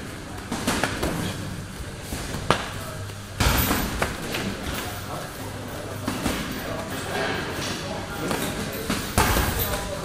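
Irregular thuds and slaps of MMA sparring: gloved strikes and kicks landing, feet and bodies on a padded mat, with a stronger impact about three and a half seconds in and another near the end. Voices and music run underneath.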